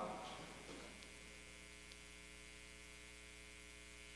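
Near silence with a faint, steady electrical mains hum and its overtones: room tone through the sound system.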